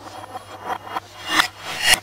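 Kitchen knife sawing through an orange's peel and flesh, played backwards: rasping strokes that each swell up and then cut off sharply.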